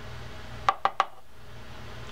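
Three quick, sharp clicks about a second in as a Shimano TLD 10 reel spool is worked by hand to free its bearing.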